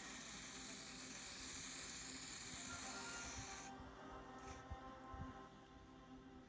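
Aerosol hairspray can spraying: one continuous hiss of about four seconds that cuts off sharply, then a brief second spray about half a second later.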